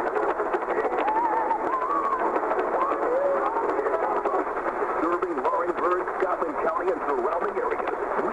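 Mediumwave AM radio tuned to 1460 kHz, receiving a distant station: a voice comes through narrow and muffled, too weak to make out, with crackles of static over it.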